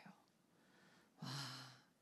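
Near silence, then about a second in a woman's soft, breathy "wah", a Korean exclamation of amazement, that fades away in under a second.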